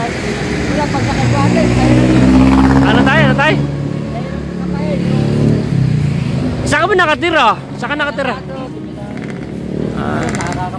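A motor vehicle passing close by, its engine note swelling to loudest about two to three seconds in and fading out by about six seconds.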